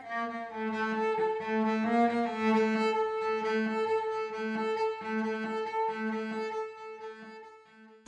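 Bowed string instruments close-miked through a 1930s STC 4021 moving-coil microphone. A higher note is held long over a lower note bowed in short repeated strokes, fading out near the end. The microphone's natural roll-off above 10 kHz softens the scrape of the bow.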